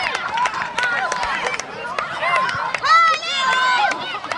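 Many boys' voices shouting and cheering over one another in celebration. There is one loud, high-pitched yell about three seconds in.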